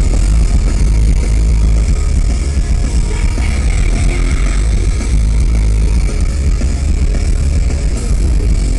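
Post-hardcore band playing live through a PA, with electric guitars and drums. It is continuous and loud, with a very heavy bass.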